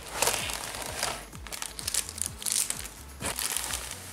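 Cardboard box and plastic packaging of a candy sushi kit being handled and opened, crinkling and rustling in several irregular bursts as the plastic tray and wrapped contents are pulled out.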